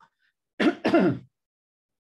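A man clearing his throat: a short two-part "ahem" a little over half a second in.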